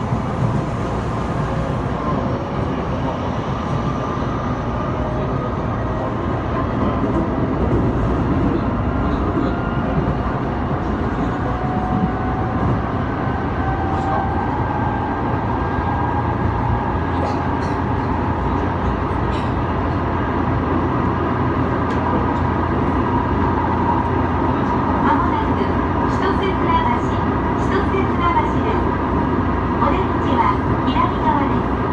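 Inside an Odakyu 2000 series electric commuter train accelerating: the inverter-driven traction motors whine, rising steadily in pitch over the first half and then holding steady at speed, over the constant rumble of the wheels on the rails.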